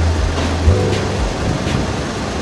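Diesel engine of a farm tractor running, a steady low drone under the general noise of the yard.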